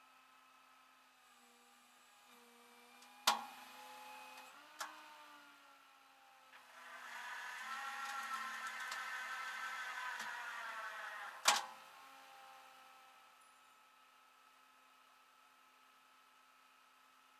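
A sharp knock, then a steady mechanical whine with a clear pitch that runs for about five seconds and ends with a second sharp knock, over a faint steady hum.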